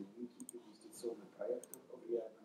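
A person speaking, unclear and fairly quiet, with a few short sharp clicks about half a second in and again near the end.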